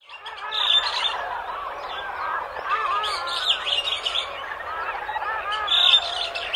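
A dense chorus of many small birds chirping and calling at once, with overlapping short chirps that continue without a break.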